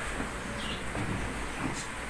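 Low, steady background hum with faint, scattered rustling and handling noises from clothing and a handheld phone as a person gets up.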